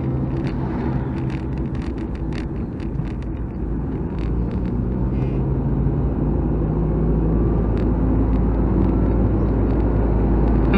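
Nissan Micra K12 driving, its engine and road rumble heard inside the cabin, with a few light clicks in the first three seconds. The low rumble grows a little louder after about four seconds.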